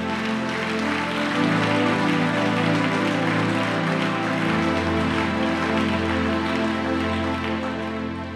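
Soft sustained keyboard chords, the harmony shifting twice, under an even hiss of congregational applause answering a call to acclaim.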